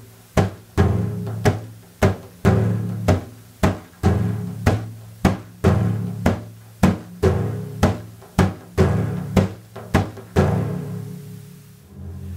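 Meinl wave drum, a frame drum with loose shot inside, played by hand in the Malfuf rhythm. A low thumb-struck dum and two finger-pad pa strokes repeat in a 3+3+2 pattern, strokes about half a second apart. The playing stops a little past ten seconds in and the last stroke rings out.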